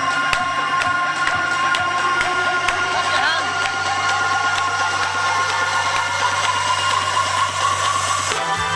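Loud, steady game-show music with a regular beat and held tones, with a few brief voices over it.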